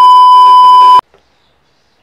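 Colour-bar test-tone beep: one loud, steady high beep lasting about a second, cutting off suddenly.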